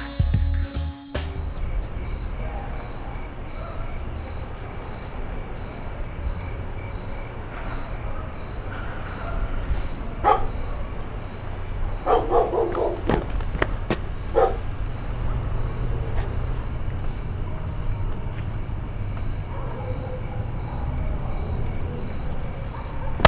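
Crickets chirping steadily in a night-time outdoor ambience over a low background rumble, with a few brief faint sounds about halfway through. Music ends about a second in.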